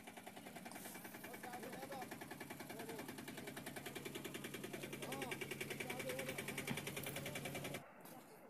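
A small engine running steadily, faint, with a rapid even pulse over a low hum. It grows slightly louder and cuts off abruptly near the end.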